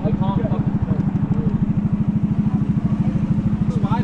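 A small boat's engine running steadily underway, with a fast, even chugging beat and a low hum.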